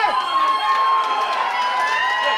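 A long, high-pitched yell held on one note, with the crowd cheering.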